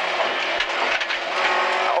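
Rally car engine running at high revs, heard from inside the cockpit.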